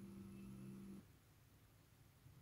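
Near silence: faint room tone with a low steady hum that cuts off about a second in.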